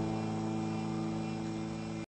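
The song's final chord held and ringing out, a steady low chord slowly fading before it cuts off at the very end.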